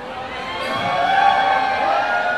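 Crowd of fans cheering and calling out, with a long drawn-out voiced call that rises and then holds steady through the second half.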